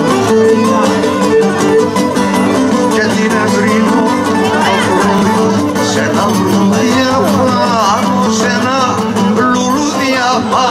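Live Cretan folk dance music from several laouta (Cretan long-necked lutes) playing a dance tune. About halfway in, a wavering melody line with vibrato comes in over them.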